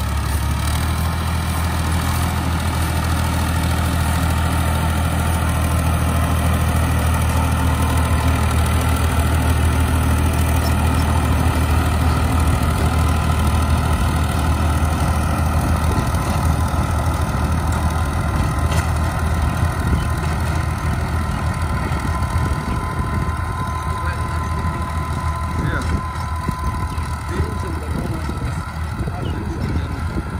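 Farm tractor engine running steadily under load as it drives a rotavator tilling the soil.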